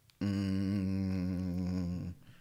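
A man humming one low, steady held note for nearly two seconds, with a slight waver in pitch.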